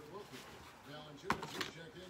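Quiet handling of items in an unboxing, with one sharp click or tap about a second and a half in, and faint low murmuring.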